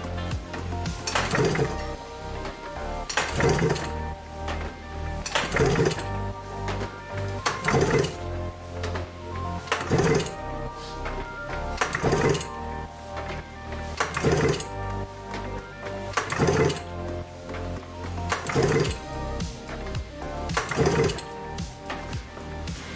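Background music over a snowmobile's three-cylinder two-stroke engine being cranked by its recoil pull cord about every two seconds, with the spark plugs out and a compression gauge on cylinder one, so the pressure builds with each pull.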